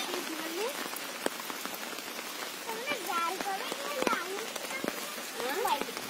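Steady rain falling on the flooded pond's water, an even hiss, with a few sharper drop taps.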